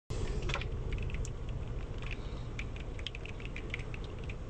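Scattered raindrops tapping irregularly on a hard surface close by, over a steady low rumble.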